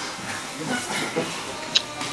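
Steady hiss of background noise with a single sharp click near the end.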